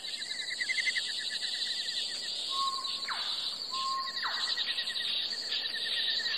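Insects trilling steadily in a rapid pulsed chorus, with a second, lower pulsed trill. Two short whistled bird calls come about two and a half and four seconds in, each ending in a quick falling note.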